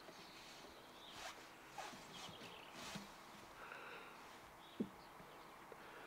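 Very faint rustling and handling noises from a jacket sleeve and hands moving over battery and inverter cables, with one short click a little before five seconds in.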